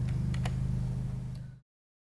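Steady low electrical hum in a room, with a few faint clicks about half a second in; the sound cuts off suddenly to dead silence shortly before the end.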